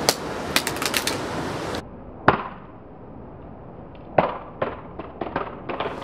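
A Samsung Galaxy Note 2 dropped on its side hits concrete: a sharp crack at the start, then a few lighter clacks as it bounces. A single louder hit comes about two seconds in, and a quick run of small clicks near the end as the phone skids and tumbles to rest.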